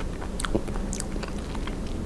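Close-miked chewing of a mouthful of strawberry ice cream bar, with a few sharp crackles in the first second and softer wet mouth sounds after.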